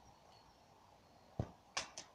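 A football kicked in a garden: one dull thud about one and a half seconds in, then two sharper knocks close together near the end.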